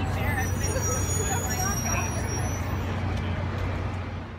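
City street ambience: a steady low rumble of vehicle traffic with people talking in the background.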